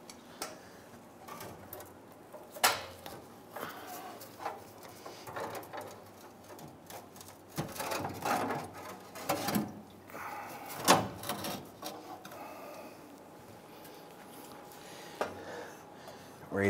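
Irregular knocks, clicks and scrapes of a steel fuel tank being pushed up into place under a 1997 Ford Explorer, with a sharp knock near the start and the loudest one about eleven seconds in.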